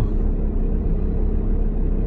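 Steady low rumble of a car heard from inside its cabin, with a constant engine and road hum and no sudden events.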